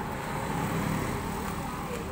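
Street traffic noise: a steady hum of passing motor vehicles and motorbike engines.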